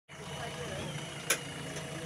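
A JCB backhoe loader's diesel engine running steadily, with faint voices and one sharp click a little over halfway through.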